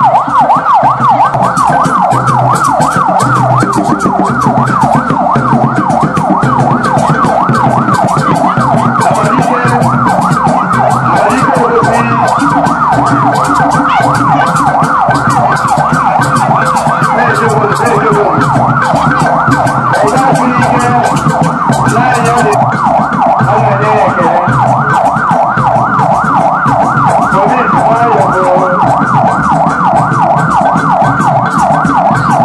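Electronic siren on a fast yelp, warbling up and down several times a second without a break.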